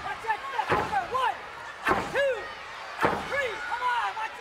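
Heavy thuds on a wrestling ring during a pro wrestling match, three of them about a second apart, each followed by a shouted call that rises and falls in pitch.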